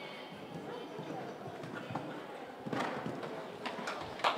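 Hoofbeats of a cantering horse on an indoor arena's sand footing, getting louder near the end as the horse comes close. A murmur of voices runs underneath.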